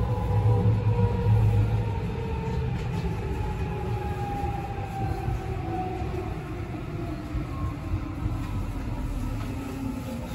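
Inside an electric commuter train car: steady running rumble with a whine from the traction motors that slowly falls in pitch as the train brakes into a station.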